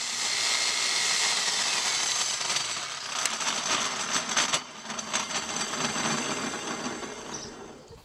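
Electric mitre saw running with its blade come loose on the arbor, a steady loud whir with a sharp click about three seconds in; about four and a half seconds in it drops off and fades away as the blade spins down.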